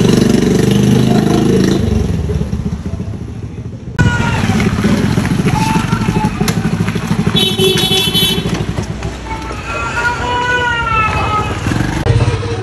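Small step-through (underbone) motorcycle engine running as it is ridden, its steady low firing rumble broken by a sudden cut about four seconds in, after which it runs on.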